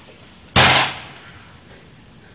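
A sudden loud bang about half a second in, fading away over about half a second.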